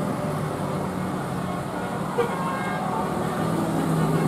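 A tour bus passing with its engine running in a steady low drone, and its horn tooting.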